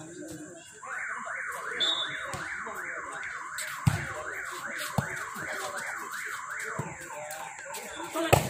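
An electronic alarm wails in quick repeated rising sweeps, about three a second, starting about a second in and running on. Two short thuds come through around the middle.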